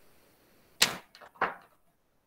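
A drinking glass picked up from the desk close to the microphone: two sharp knocks about half a second apart, the first the louder, with a fainter click between them.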